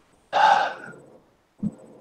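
A man's audible intake of breath into his microphone, starting about a third of a second in and lasting about half a second. A brief low sound follows near the end, just before he speaks again.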